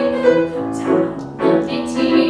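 Live music: a grand piano accompanying a woman singing a musical-theatre song.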